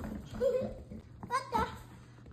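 Baby goats bleating: two short calls, about half a second and a second and a half in.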